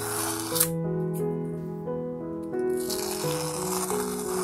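Masking tape being peeled off the edges of a painted canvas: a long ripping hiss that ends with a sharp snap about half a second in, and another long rip starting a little past halfway. Background music with sustained notes plays underneath.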